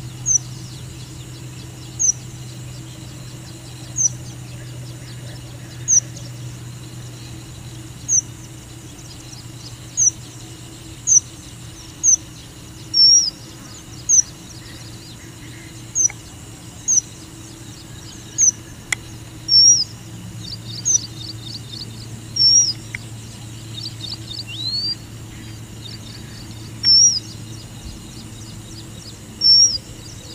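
Red avadavat (strawberry finch) calling: short, high-pitched chirps about every two seconds, coming closer together around the middle, with a few brief twittering phrases and one rising whistle in the second half. A steady low hum runs underneath.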